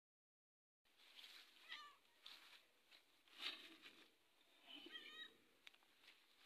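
A cat meowing quietly, two short meows: one about two seconds in, the other about five seconds in. A few brief soft noises fall between them.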